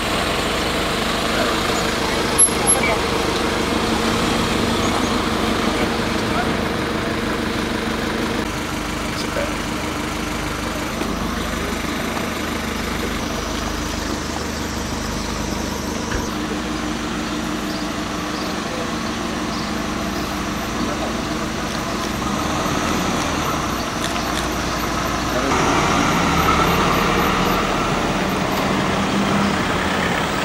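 Police vehicle engines running as the vehicles drive slowly along a street, with people's voices in the background. The engine sound grows louder near the end.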